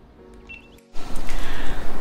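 A short, faint electronic beep about half a second in, as the GoPro Hero 7 Black is set recording. From about a second in, a sudden loud, even sound without speech takes over.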